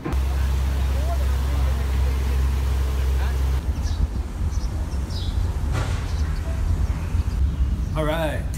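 Steady low rumble of a moving passenger train heard inside the carriage. About three and a half seconds in it changes to a rougher, uneven low rumble with a few faint high chirps.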